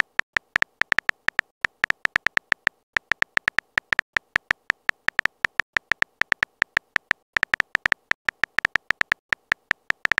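Phone keyboard typing sound effect: short, sharp key clicks in a rapid, even run of about five or six a second, with brief pauses about three seconds and seven seconds in, as a text message is typed out letter by letter.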